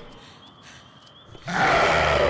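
A loud, harsh animal roar breaks in suddenly about one and a half seconds in, after a quiet stretch, and carries on with a falling sweep in pitch.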